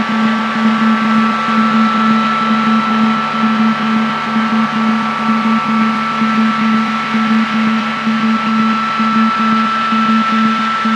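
Experimental film soundtrack: a loud, unchanging drone with a held low hum and a higher held whine over dense rough noise. The low hum flutters slightly.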